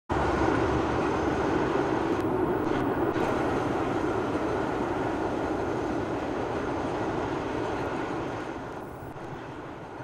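Gresley A4 Pacific steam locomotive Mallard and its coaches passing at speed: a steady rushing rumble of the train on the rails that fades over the last two seconds as the train draws away.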